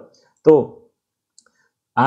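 A man's voice saying one short word, with a sharp click at its start, followed by about a second of near silence with one faint tick.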